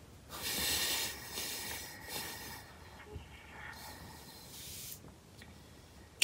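Soft, hissing breaths close to the microphone: a long one just after the start and another about four seconds in.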